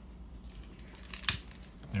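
A single sharp click about a second in, with a few fainter ticks around it, over a faint steady low hum.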